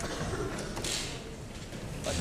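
Quiet hall room tone with one short rustling handling noise about a second in.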